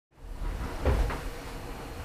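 Two short, soft thumps close together about a second in, over a low steady hum, like something being knocked or handled.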